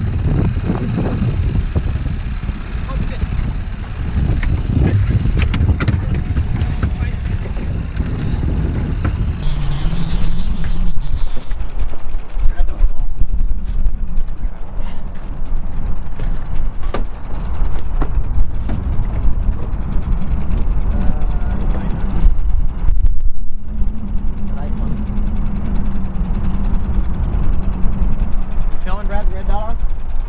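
Outboard motor running steadily at trolling speed on an aluminium fishing boat, a low rumble mixed with wind and water noise. A steady low hum from the motor comes through in the later part.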